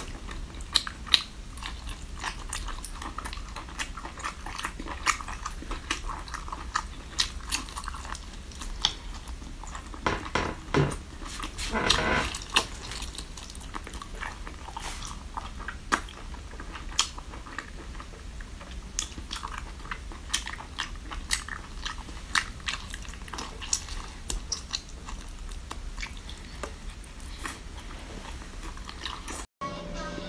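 A person chewing and biting cooked octopus close to the microphone, with short clicks at irregular intervals throughout. The sound drops out briefly near the end.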